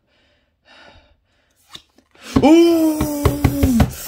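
A child lets out a long, drawn-out "ooh!" of excitement about two seconds in, with short bursts of laughter breaking over it, after a couple of soft breaths.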